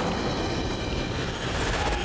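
Cartoon sound effect of a slime blob swelling into a giant tentacled monster: a dense rumbling noise that grows brighter near the end.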